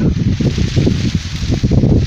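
Wind buffeting the microphone: a loud, irregular low rumble out in an open maize field.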